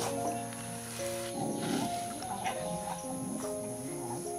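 Background music of steady held notes, with a young macaque's rough, short calls over it about a second and a half in and again a little later.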